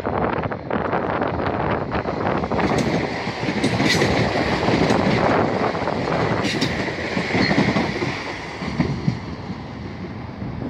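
Electric passenger train passing close by at speed: a continuous rush of wheels on rail with repeated clicks as the wheels cross rail joints. It is loudest in the middle as the coaches go by and eases off near the end as the train moves away.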